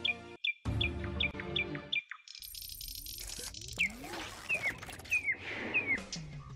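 Intro music with bird chirps laid over it: short falling chirps repeat about every 0.4 s. The music drops out a little over two seconds in, and more chirps and gliding sound effects follow.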